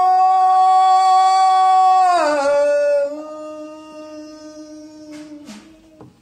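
A man singing unaccompanied. He holds one long, loud note for about two seconds, then slides down to a lower note that he holds, growing faint, for about three seconds more.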